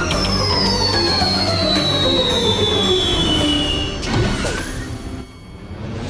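Cartoon falling-whistle sound effect over background music, a long whistle sliding steadily down in pitch for about four seconds, fading out near the end.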